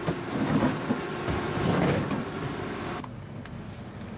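Outdoor background noise with a few short clicks and knocks. It drops abruptly to a quieter, duller background about three seconds in.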